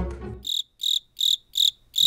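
Cricket chirping sound effect: five short, high chirps, evenly spaced about two or three a second, with near silence between them, after background music fades out in the first half second.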